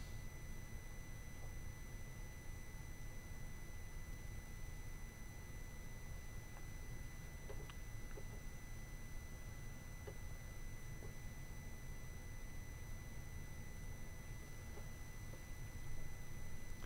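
Quiet room tone: a steady low hum and hiss with a faint, steady high-pitched whine. A few faint clicks come through about halfway in and near the end.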